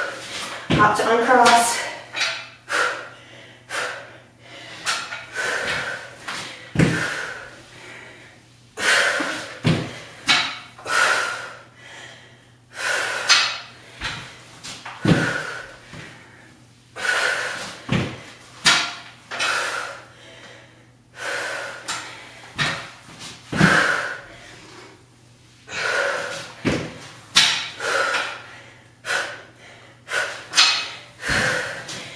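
A woman breathing hard in short, forceful exhales, about one every second or two, as she works through dumbbell push-ups and side-plank presses. A few dull thuds come as the adjustable PowerBlock dumbbells are set down on the exercise mat.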